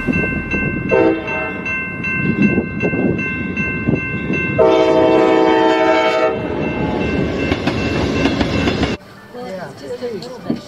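Amtrak diesel locomotive's horn sounding for a grade crossing: a short blast about a second in, then a longer one near the middle, over the rumble of the approaching train. The train sound cuts off suddenly near the end, and faint voices take over.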